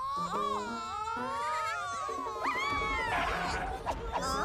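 Wordless, wavering cartoon-character vocals, wailing and crooning in long gliding pitches, over background music with short stepped low notes. A burst of rumbling noise comes in near the end.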